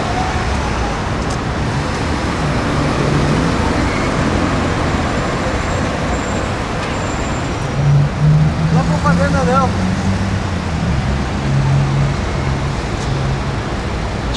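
Road traffic noise from cars and buses stopped and moving in a street, with a low engine hum that grows louder about eight seconds in. Brief voices are heard partway through.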